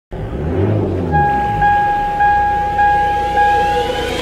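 A clean electronic beep repeating about every 0.6 s over a low hum, with a rising sweep building toward the end: intro sound effects leading into music.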